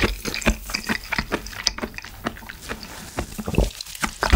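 Close-miked wet chewing of a mouthful of seaweed soup, a run of irregular squelchy mouth clicks and smacks.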